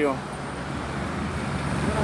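Steady road traffic noise from cars on a wide city road: a low rumble under a continuous wash of tyre and engine noise.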